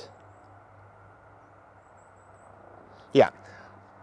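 Faint outdoor background noise with a steady low hum for about three seconds, then a man says a short 'yeah' near the end.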